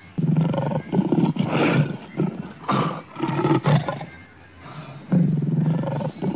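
Male lion roaring: a series of deep, rough calls about a second apart, with a short lull near the end before one more long call.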